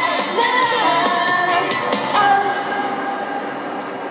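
Female idol group singing live over a pop backing track through the PA in the closing bars of a song. It ends on a long held note that fades out near the end.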